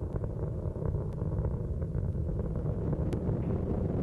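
Low, steady rumble of the Space Shuttle's solid rocket boosters and main engines during ascent, heard from a distance, with a faint steady hum above it.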